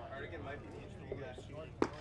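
Faint ballpark crowd chatter, then near the end a single sharp pop as a pitched baseball hits the catcher's mitt on a swinging miss.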